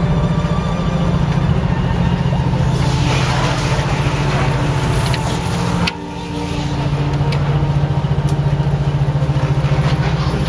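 Ship's engine running with a loud, steady low drone that pulses rapidly. A hiss swells in the middle, and the sound dips briefly about six seconds in.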